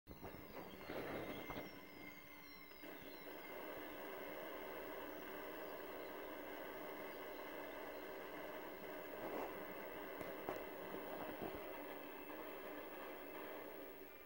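Faint fireworks audio playing through a CRT television's speaker: a steady hum and hiss with a few sharp pops, and thin falling whistles in the first few seconds.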